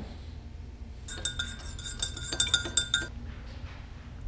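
Metal spoon stirring sugar into coffee in a glass mug: a quick run of ringing clinks against the glass, starting about a second in and lasting about two seconds.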